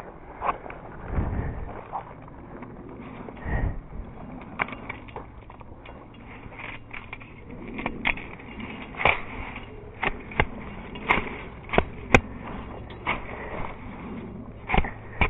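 A machete working through dry brush and twigs in leaf litter. Dull thumps come in the first few seconds, then a run of sharp, irregular snaps and clicks as twigs are cut and broken.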